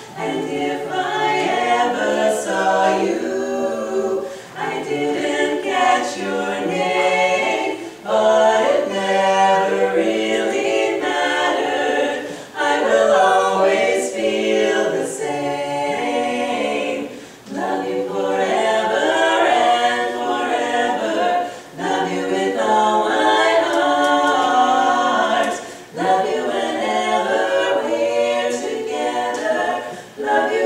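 Women's a cappella quartet singing unaccompanied in close four-part harmony, with brief breaks between phrases every few seconds.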